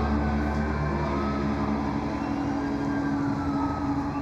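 A steady low drone with one held tone and faint sliding pitches above it, with no beat: the sustained closing drone of the rock song as it rings out.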